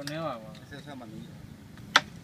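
A carrom striker flicked with a finger across a wooden board: one sharp, loud clack near the end.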